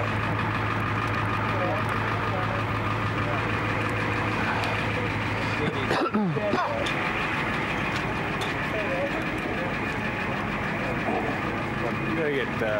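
Steady low hum of an idling ambulance engine, heard from inside the patient compartment, with the hum thinning about halfway through.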